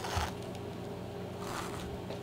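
Thread pulled through the punched stitching holes of a soft leather baby moccasin: two faint swishes, one at the start with a soft thump of handling, the other about a second and a half in, over a steady low hum.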